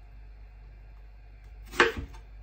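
A kitchen knife cuts through a piece of apple and hits the wooden cutting board once near the end: a short, crisp chop.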